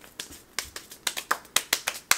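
A person clapping their hands in quick, irregular claps, about a dozen, bunching closer together in the second half.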